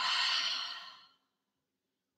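A woman's open-mouthed exhale, a breathy sigh that fades away over about a second: the deliberate release of a deep yoga breath drawn in through the nose.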